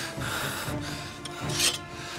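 Rubbing, rustling noise of clothing as one man grabs and pulls another close, with a short hiss about a second and a half in, over soft background music.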